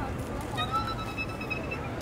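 City street ambience: a steady low traffic rumble under background voices, with a thin steady high-pitched tone lasting about a second from about half a second in.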